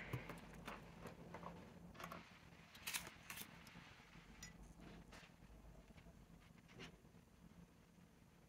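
Quiet, scattered clicks and taps of small plastic ink-sample vials and paper cards being handled on a table, mostly in the first three seconds, with one more tap near the end.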